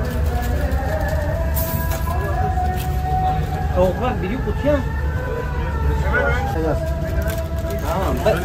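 Kitchen background noise: a steady low rumble with a drawn-out, slightly wavering tone running through it, and indistinct voices in the middle.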